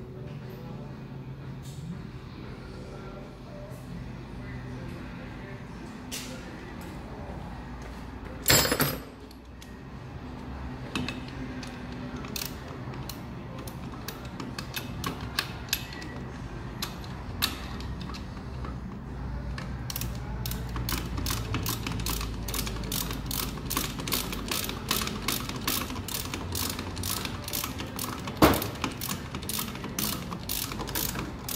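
Hand ratchet wrench clicking as bolts are run in, sparse at first and then a steady run of about three clicks a second from about twenty seconds in. A loud metallic clatter comes about eight seconds in.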